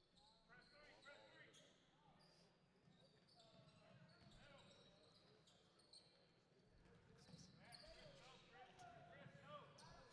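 Faint sounds of a basketball game in play on a hardwood gym court: players' voices calling out and a basketball bouncing.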